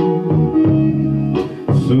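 Pre-recorded backing track with guitar playing between sung lines of a song, the male singer coming back in near the end.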